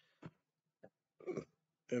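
A man's brief mouth noises, then one short pitched vocal sound a little over a second in, in a pause between spoken phrases.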